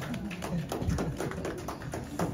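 A small group clapping by hand, irregular and uneven, with voices laughing and calling under it.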